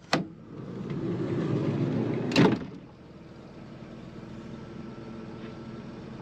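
A vehicle's power window going down: a click, a swelling motor whir, and a sharp clunk about two and a half seconds in as it stops, followed by a steady lower hum.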